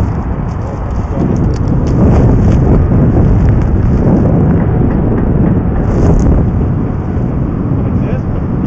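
Wind buffeting the camera's microphone: a loud, uneven low rumble that swells and eases.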